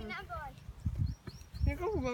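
A boy's voice calling out in drawn-out, sliding tones, once at the start and again near the end, with low wind rumble on the microphone in between.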